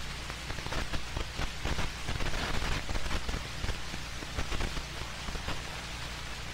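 Soundtrack noise of an old film: steady hiss with scattered crackles and a low hum.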